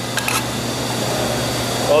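Metal tongs clicking lightly against a sauté pan a few times near the start, over a steady rushing background noise.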